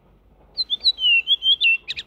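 Redwing singing: starting about half a second in, a short run of clear whistled notes, then the start of a twittering phrase near the end. The recording's background traffic noise has been turned down to a faint haze by heavy noise reduction.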